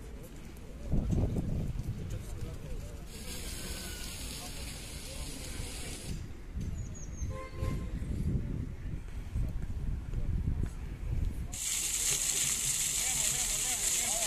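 A voice speaking Serbian over outdoor background noise, with two spells of steady high hiss about three seconds long: one a few seconds in, the other near the end.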